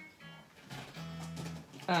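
Only a woman's voice hesitating between phrases: a short sound, then a held hum, 'mmm', for most of a second.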